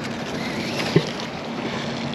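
Thrown fishing magnet flying out on its rope, with a steady hiss of rope paying out, then one short dull hit about a second in as the magnet splashes into the water.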